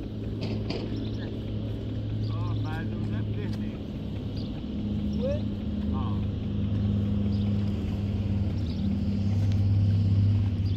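A steady low engine drone that grows louder toward the end, with a few bird chirps in the middle.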